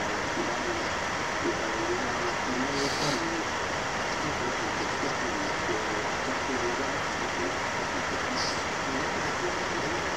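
A man talking over a steady hiss of background noise.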